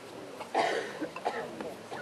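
A person coughs once, loudly, about half a second in, followed by a little indistinct talk.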